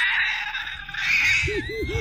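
High-pitched shrieking laughter, breaking into a quick run of short, repeated laughs about halfway through.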